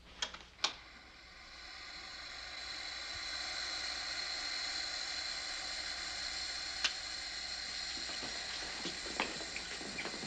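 Two sharp clicks of control-panel switches, then a cryogenic freezer chamber starts up with a hiss that swells over a couple of seconds and holds steady, a thin high whine in it, as the booth fills with freezing vapour. A few more sharp clicks come later.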